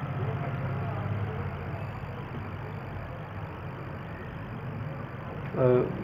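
A steady low hum with a haze of background noise, somewhat louder in the first couple of seconds. A man's brief 'uh' comes near the end.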